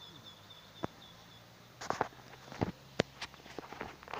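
Footsteps through grass and brush, heard as irregular knocks and rustles, most of them in the second half.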